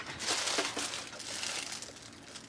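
Rustling and handling noise close to the microphone, as of clothing or a hand brushing against it, loudest at first and fading out after about a second and a half.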